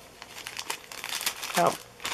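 Clear plastic zip-top bags crinkling as they are handled, a quick run of crackles through the first part.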